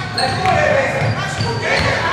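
Basketball game sounds in a sports hall: a ball bouncing on the wooden floor, short high squeaks of sneakers, and players' and coaches' voices calling out.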